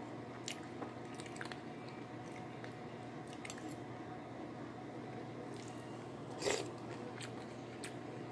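A person chewing a mouthful of sardine and vegetable soup close to the microphone, with a few light clicks and one louder, noisier sound about six and a half seconds in, over a steady low hum.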